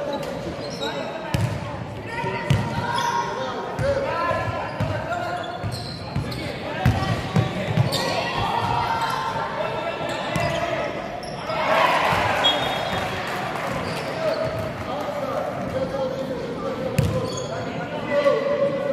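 Basketball bouncing on a hardwood court in a large, echoing sports hall, mixed with players and coaches calling out.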